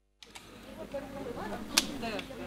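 After a brief silence, outdoor background with faint distant voices of people. There is one sharp click near the end.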